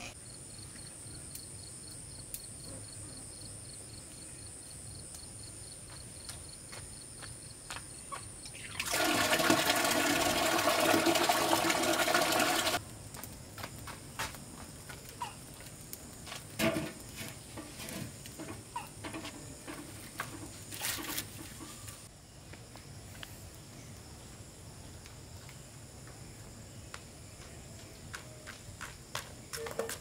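Water gushing loudly for about four seconds, a third of the way in. Before it, a steady high insect trill; after it, scattered clicks and snaps from a bamboo and wood fire crackling in a brick stove.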